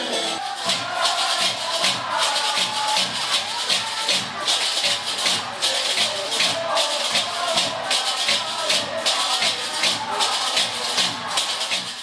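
Spanish traditional folk music carried by rattling, scraping hand percussion in a quick, dense rhythm, with voices faintly beneath and no guitar.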